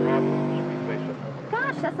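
Motorcycle engine passing by, its pitch falling slightly as it goes and cutting out about a second in.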